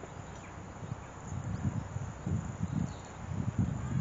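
Water sprinkling from a watering can's fine rose onto soil, a steady soft hiss. Irregular low thumps join in about halfway through.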